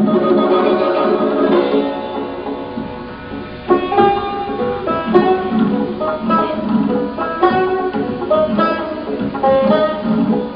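Persian classical music on the tar, a plucked long-necked lute, playing a melodic run of single plucked notes. The playing softens in the middle and comes back with a sharp pluck about four seconds in, followed by quick changing notes.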